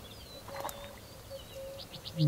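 Faint bird calls over quiet open-air ambience: thin high chirps scattered through, and a quick run of four short chirps near the end, with one light click about a third of the way in.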